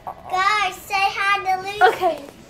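A child's voice in a wordless sing-song, a run of short pitched notes that rise and fall.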